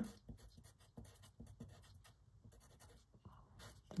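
Pencil writing on paper: a faint, irregular run of short scratching strokes as a number and a unit are written.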